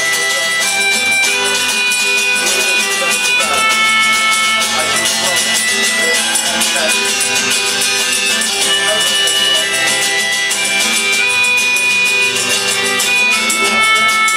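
Live acoustic music with no singing heard: an acoustic guitar strummed under a fiddle and long, steady high melody notes held for several seconds each.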